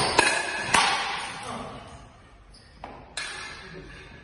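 Steel sidesword blades clashing in sparring: three quick clashes in the first second, then two more about three seconds in, each ringing briefly.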